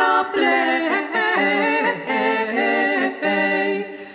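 Female vocal ensemble singing a cappella in close harmony, several voices holding long notes that move together from chord to chord, the phrase trailing off near the end.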